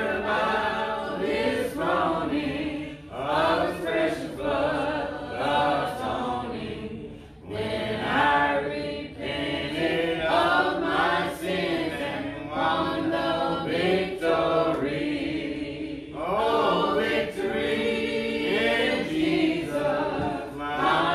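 Church congregation singing a hymn a cappella, many voices together without instruments, in long held phrases with brief breaks between lines.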